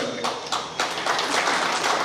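Audience clapping: a dense run of many hand claps filling a pause in the speech.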